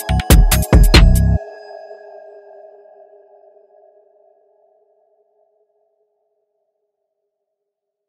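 The last bar of a 141 BPM UK drill instrumental: four hard, gliding 808 bass hits with hi-hat clicks, then the beat cuts off about a second and a half in. A held synth melody note rings on and fades away over the next few seconds.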